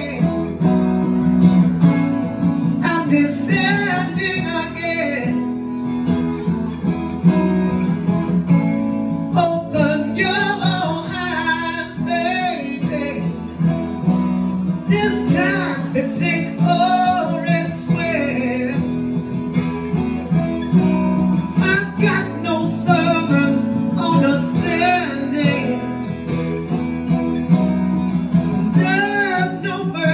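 A man singing over an acoustic guitar in a live performance, in sung phrases with short breaks between them while the guitar plays on.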